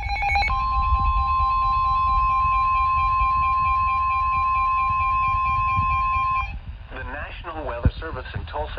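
Midland NOAA weather radio sounding a severe thunderstorm warning alert: a short burst of SAME data tones, then the steady NOAA warning alarm tone near 1 kHz, held for about six seconds with a pulsing beep over it, before cutting off. The synthesized voice then starts reading the warning, and a sharp click comes near the end.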